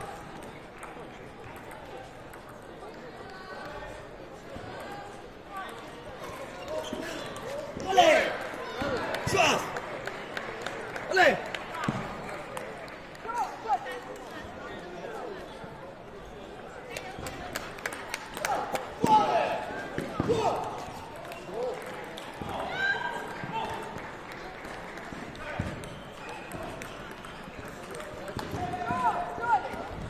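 Table tennis ball clicking against the table and rubber bats in short rallies, mixed with voices and a few loud short shouts, which are the loudest sounds.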